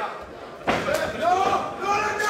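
A single sharp smack of impact as the two MMA fighters clash, about two-thirds of a second in, followed by shouted voices from around the cage.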